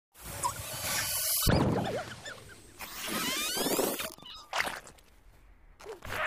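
Cartoon sound effects from an animated film, sped up: a squirrel character's squeaks and squeals, with a thump about a second and a half in and a run of rising whistle-like glides around three seconds in.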